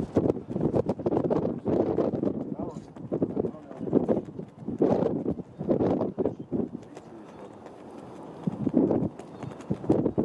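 People talking near the microphone, in irregular bursts mixed with clicks and knocks, with a lull about seven seconds in.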